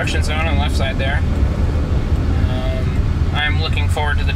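A voice talking in short phrases, in the first second and again near the end, over the steady low rumble of road noise inside the cabin of a Waymo Jaguar I-Pace, an electric car.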